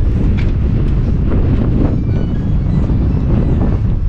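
Massey Ferguson tractor engine running with a steady low rumble, mixed with wind buffeting the microphone.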